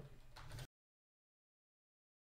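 Near silence: faint room noise that cuts off to dead silence about two-thirds of a second in.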